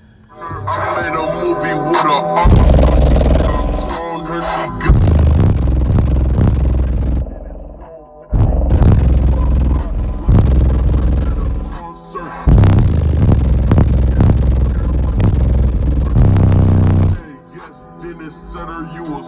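Rap music played loud through Skar Audio EVL subwoofers driven by a 4500-watt Skar amplifier, heard inside the vehicle. The vocals come in first. Deep bass hits come in hard about two and a half seconds in, drop out briefly twice, and carry on to near the end.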